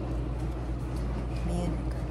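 A steady low background hum, with a brief snatch of a voice about one and a half seconds in.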